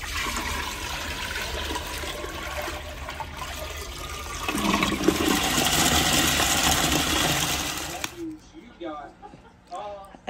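Old aquarium water poured from a bucket into a toilet bowl, a steady splashing gush. It gets heavier about halfway through, then stops suddenly near the end.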